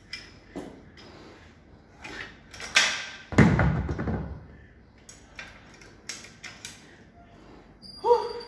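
Weight plates being slid off a loaded barbell and set down on a rubber gym floor: a few clanks and knocks, the loudest a heavy thud about three and a half seconds in with a short rumble after it, then lighter clicks.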